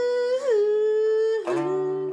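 A man hums a long held note that slides up into the pitch and dips once about half a second in, over a steel-bodied resonator guitar. A new guitar chord starts about one and a half seconds in.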